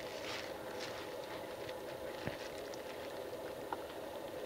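Quiet room tone with a faint steady hum and two small clicks, a bit over two seconds in and near the end: a finger pressing the front-panel buttons of an Element flat-screen TV.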